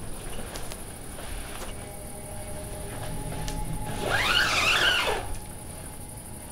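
Low, steady, held music tones, then about four seconds in a single high squeal of about a second that rises and falls.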